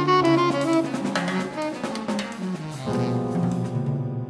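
Modern jazz played by tenor saxophone, piano and drum kit, with the drums prominent. The saxophone runs through quick notes near the start.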